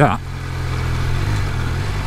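Triumph Speed Triple 1200 RS's inline three-cylinder engine running at low revs while the bike rolls slowly in traffic, a steady low drone, with light wind and road noise over it.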